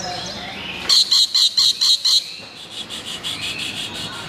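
Rainbow lorikeet calling: a run of about seven shrill, evenly spaced notes starting about a second in, then a softer, quicker run of notes.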